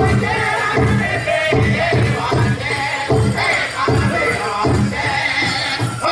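Powwow drum and singers: a big drum struck in steady unison beats, roughly one every three-quarters of a second, under high-pitched group singing.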